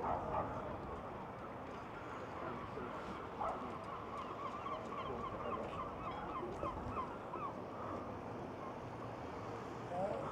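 A bird giving a rapid run of short, repeated calls, several a second, from about four seconds in until about seven and a half seconds, with a single rising call just before, over a steady background hiss.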